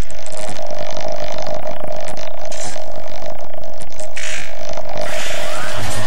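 Sci-fi sound design of a TV channel ident: a steady droning tone laced with many mechanical clicks and ticks, then a whoosh with rising sweeps about five seconds in.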